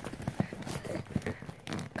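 Hands prying and scratching at the packing tape of a cardboard box: a run of irregular scrapes, clicks and small tearing sounds as the tape resists being opened.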